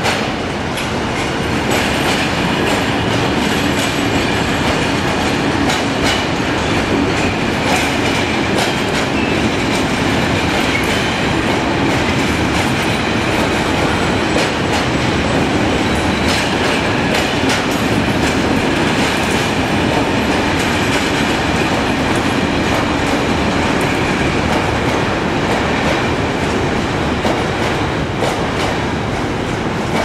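Long freight train of covered bogie hopper wagons rolling past at a steady speed, its wheels clicking over rail joints in a continuous rumble.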